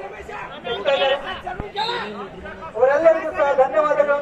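Speech: men talking over a background of crowd chatter.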